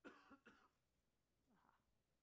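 A single faint cough at the start, then a softer brief sound about a second and a half in; otherwise near silence.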